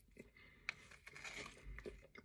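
Faint eating sounds: a mouthful of açaí bowl being chewed, with a few small clicks from the spoon and mouth.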